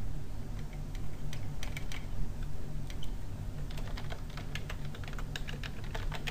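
Computer keyboard typing: scattered key clicks at first, then a quicker run of keystrokes over the last couple of seconds as a word is typed. A steady low hum runs underneath.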